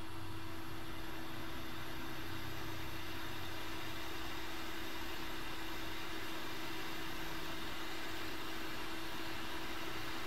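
Hot air rework gun blowing a steady stream of hot air to heat the solder pads on a circuit board: an even rushing hiss with a constant low hum underneath.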